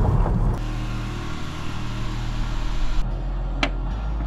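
A car running, with a steady low engine and road hum, and a single sharp click near the end.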